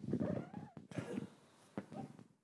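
A microphone cuts in with a click, followed by a man's voice making indistinct, wordless sounds before he begins speaking.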